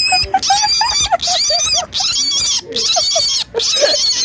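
Baby rabbit screaming while held in the hand: a run of about five shrill, piercing cries, each about half a second long with short breaks between. A rabbit's scream is its distress call, given here when it is held.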